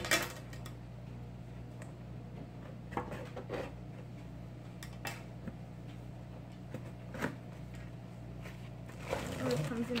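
A cardboard slime-kit box being opened by hand, with a few sharp knocks and taps scattered through, over a steady low hum. Near the end comes a longer stretch of rustling as a plastic bag is pulled out of the box.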